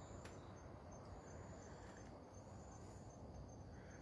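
Faint crickets chirping: short high chirps repeating a few times a second over a low, steady background hiss.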